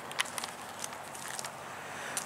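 Quiet outdoor background hiss with a few faint clicks and taps, the clearest just after the start, as the handheld camera is swung round.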